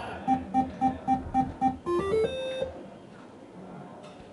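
Bullshooter electronic dartboard machine playing its turn-change sound: six quick, even beeps, then a short rising run of tones ending on a held note. It signals the end of one player's turn and the handover to the next.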